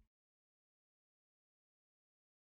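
Near silence: a digital gap between two tracks of a lo-fi music mix.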